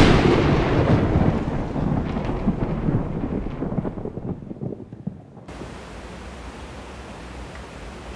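A sudden loud boom that rumbles on and dies away over about five seconds, like a thunderclap, followed by a faint low steady hum.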